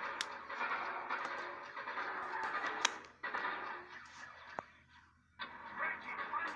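Paper and sketchbook being handled: a rustling noise with a few sharp clicks, broken by a short near-silent pause a little before the end.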